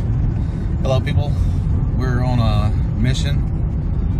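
Steady low drone of road and engine noise from a moving vehicle towing a sawmill trailer, heard from inside the cab, with a few short stretches of a voice over it.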